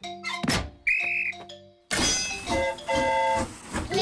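Cartoon sound effects: a thunk and a rising swoosh, then a short, high whistle blast about a second in, as a railway guard's signal for the train to depart. Background music starts about two seconds in.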